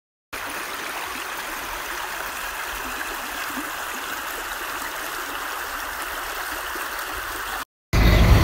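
Shallow creek flowing over rocks, a steady water noise that stops abruptly shortly before the end.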